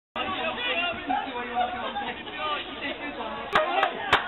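Crowd of football supporters chattering, several voices at once. From about three and a half seconds in, a fan close by starts clapping, two sharp hand claps.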